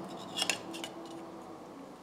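Small pliers working on the thin tinplate body of a Hornby toy engine, gently bending out a dent: a few quick metal clicks and scrapes about half a second in, then quiet handling.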